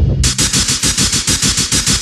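Industrial hard techno in a short break: the kick drum drops out, leaving a rapid, buzzing stutter of distorted noise that repeats about a dozen times a second.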